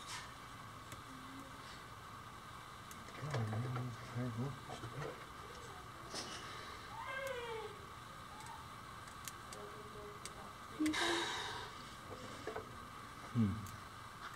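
Faint, short calls that glide in pitch, one about six to seven seconds in and a louder one about eleven seconds in, over a faint steady hum.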